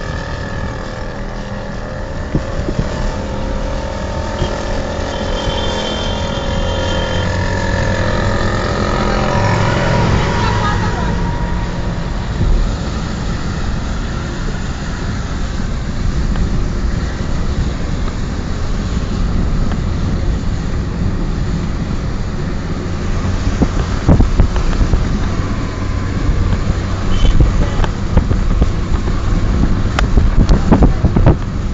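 A car driving along: steady engine and road rumble, with wind buffeting the microphone, the gusts stronger near the end.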